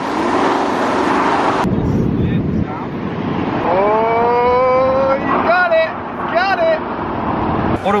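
Audi Q7 engine revving hard while the SUV drifts on a snow-covered track, with a spray of snow and tyre noise over it at first. A few seconds in the engine note climbs steadily under full throttle, and short whoops from the occupants follow.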